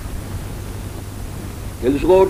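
Steady background hiss with a low hum in a pause of a man's spoken discourse; his voice starts again near the end.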